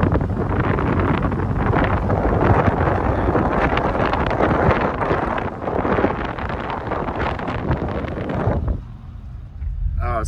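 Wind rushing over the microphone, with road noise, from a car being driven. The rush drops off abruptly near the end, leaving a quieter low hum from the car.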